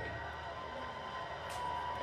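Steady crowd noise from basketball game footage played back through room speakers, heard as an even hush with a low hum beneath.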